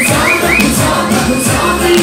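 Loud live music with a female singer over amplified backing, recorded from among the audience in a club. A few short upward vocal slides come near the start.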